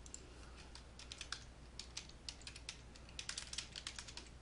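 Faint typing on a computer keyboard: a quick, irregular run of key clicks as a short phrase is typed.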